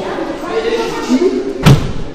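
A single heavy thud near the end, the loudest sound here, as of a judoka landing on the tatami mat in a throw or breakfall, over children's voices in the hall.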